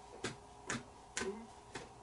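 A row of short, sharp taps, about two a second and a little uneven in spacing, from hands striking each other while signing.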